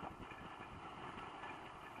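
Faint, steady road and engine noise of a moving car, heard from inside the cabin through a dashcam's microphone.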